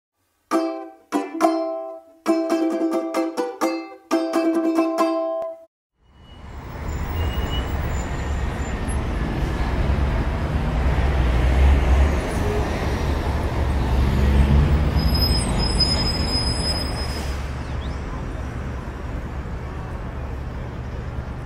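A short phrase of plucked-string music, a handful of chords struck and left to ring, stopping about six seconds in. Then street traffic noise takes over: a steady low rumble of vehicles that swells and eases.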